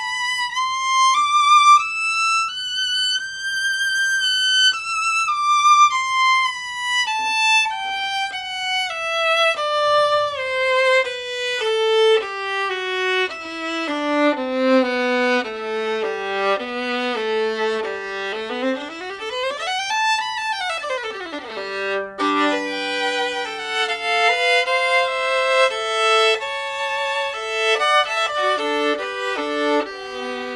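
Solo Holstein Traditional Red Mendelssohn violin with Thomastik Dominant strings, bowed. A melody climbs high, then descends stepwise into the low register. About 20 s in comes a fast run up and back down, and the last third is played in double stops.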